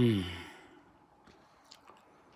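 A man's short voiced sigh, falling in pitch and fading within about half a second, followed by a faint click near the end.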